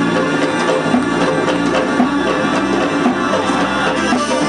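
Georgian folk dance music played by a band, with drums keeping a driving beat and guitar, running at a steady level.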